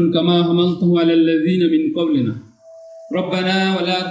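A man chanting a dua (Muslim supplication prayer) into a microphone through a loudspeaker, in a drawn-out, recited intonation. He pauses for about a second past the middle, then carries on.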